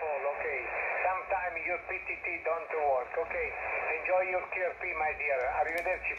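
A distant amateur station's voice received in single-sideband on a Xiegu X5105 HF transceiver, played through its speaker: continuous, thin, band-limited speech over a steady hiss.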